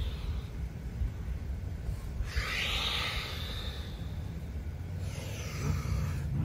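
A person breathing out long and audibly about two seconds in, as he threads one arm under the body in a yoga twist, with a fainter breath near the end, over a steady low background rumble.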